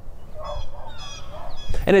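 Birds calling outdoors: several short, high calls in quick succession, over a low wind rumble.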